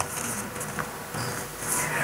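A pause in a speech over a public-address microphone: a faint steady hiss of room tone, with a short breath in near the end.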